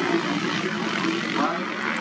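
Motocross bike engines running steadily in the background, mixed with speech.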